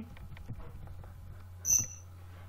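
Steady low electrical hum under the recording, with a few faint ticks. Near the end comes one short, sharp click with a thin high ring, the loudest sound here.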